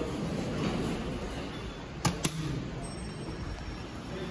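Fujitec traction elevator arriving and opening at the landing: two sharp clicks about halfway through, then a faint high steady tone for about a second.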